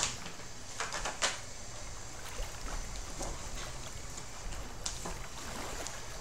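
Tarot cards being handled while one is drawn from the deck: a few short, soft card rustles in the first second and another near the end, over a steady faint hiss.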